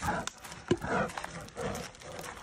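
A few short breathy huffs and scattered crunching steps on gravel as a brown bear walks close by on a gravel path.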